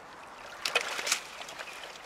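River shelf ice being broken open: a quick burst of sharp cracks and crunches about half a second to a second in.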